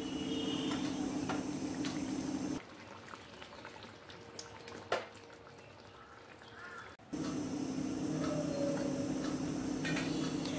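A pot of fish curry bubbling gently on a gas stove, with a steady low hum under it. The sound drops much quieter from about two and a half seconds to seven seconds, with one sharp click near five seconds.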